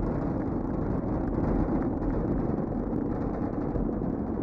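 Steady, deep noise of NASA's Space Launch System rocket in flight, heard from the ground, with its two solid rocket boosters and four RS-25 core-stage engines firing.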